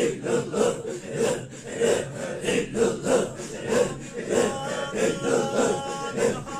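A group of men chanting Sufi dhikr in a steady rhythmic pulse, about one and a half beats a second, each beat a breathy group exhalation. About four seconds in, a solo male voice begins singing an ilahi melody in long held notes over the chant.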